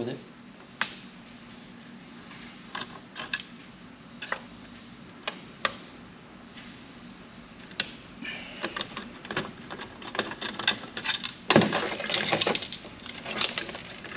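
A hand screwdriver working the small screws of a floppy drive's motor: scattered small metallic clicks and taps against the sheet-metal chassis, growing busier and louder in the second half, over a faint steady hum.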